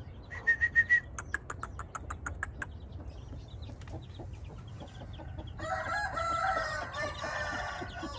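Chickens clucking in a quick series of short notes over the first few seconds, then a rooster crowing for about two seconds near the end.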